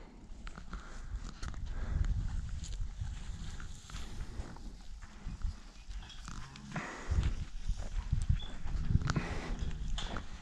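Dromedary camels moving about close by: irregular footsteps on dirt and low animal sounds, busier near the end.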